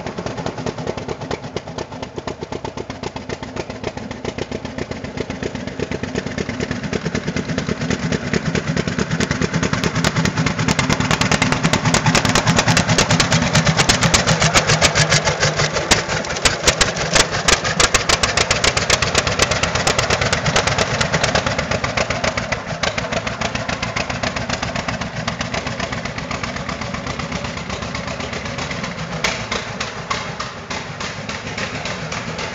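A 1948 John Deere Model A's two-cylinder engine running as the tractor drives up and past, with a rapid even train of exhaust beats. It grows louder to a peak as the tractor goes by, then eases off.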